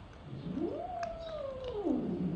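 Domestic cat yowling from inside a pet carrier: one long drawn-out call that rises, holds, then slides down low near the end. It is a defensive reaction to a dog sniffing at the carrier.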